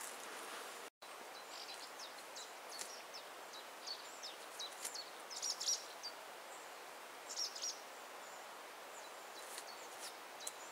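Small birds chirping and singing in short, high notes over a steady outdoor hiss, with the busiest bursts a little past the middle and again about three quarters of the way through. The sound drops out completely for a moment about a second in.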